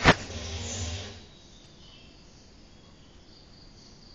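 A TV sports ident's guitar music ends on one sharp hit right at the start and stops about a second later. After that there is only a faint hiss.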